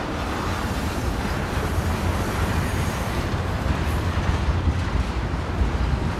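Freight train of tank cars rolling past close by: a steady rumble and clatter of steel wheels on the rails.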